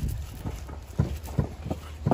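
A few light, irregular knocks, about four in the second second, over a low steady hum.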